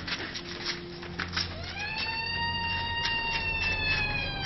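A long, high wail rises quickly about a second and a half in, holds steady, then slowly sinks. A few faint clicks come before it.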